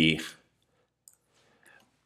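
A man's voice ends a word, then near silence broken by a single faint click about a second in, typical of a computer mouse button.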